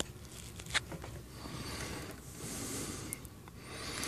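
A few faint clicks, one right at the start as a button on a plug-in power meter is pressed, then soft rubbing handling noise.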